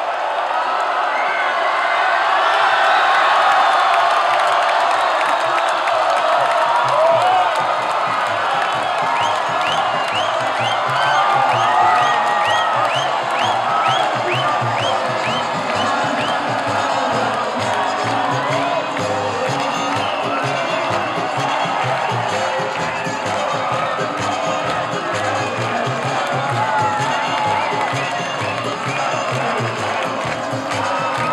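A large crowd of fans cheering, whooping and shouting at the end of a basketball game, with music playing underneath. About a third of the way in there is a quick run of short, high, rising calls, roughly two a second.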